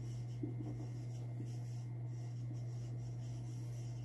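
Felt-tip marker writing on a whiteboard, faint short strokes of the tip, over a steady low hum.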